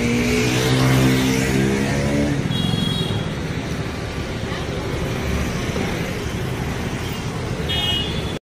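Road traffic noise: a motor vehicle engine rising in pitch over the first two seconds or so, then a steady traffic din with voices in it. Two brief high-pitched toots, about three seconds in and near the end.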